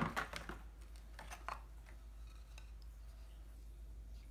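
Light clicks and taps of a wooden table tennis blade being handled and lifted out of its box tray, mostly in the first second and a half, then only a faint steady room hum.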